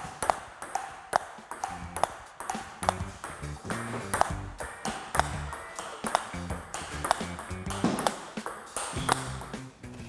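Table tennis ball clicking off the bat and table in a steady backhand blocking rally, about two hits a second, with background music.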